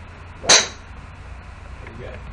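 A single sharp, loud crack of a golf club striking a ball, with a brief high metallic ring, about half a second in.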